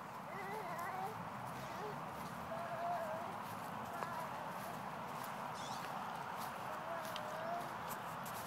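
A toddler's wordless vocalizing: a few short, wavering high-pitched sounds, over a steady background hiss.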